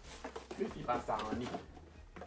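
A person talking briefly in a small room, with a low steady hum underneath.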